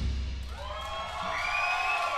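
A rock band's final chord dies away, leaving a low bass tone ringing underneath. From about half a second in, the audience starts cheering and whooping.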